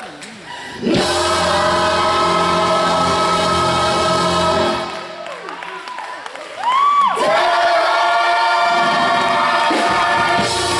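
Gospel choir singing held chords in full harmony. The choir comes in about a second in and holds a chord until about five seconds. It drops back briefly while a voice slides, then swells in again near seven seconds with an upward scoop into another held chord.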